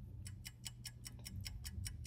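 Countdown timer of a song association game played through a TV, ticking fast and evenly at about five ticks a second from about a quarter second in: the clock running down the 10 seconds allowed to name a song.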